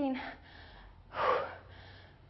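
A woman's single sharp, breathy gasp about a second in, taken between reps of weighted lunges.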